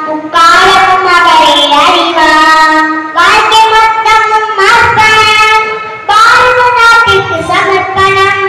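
A young girl singing solo, unaccompanied, in held notes, with phrases breaking about every three seconds.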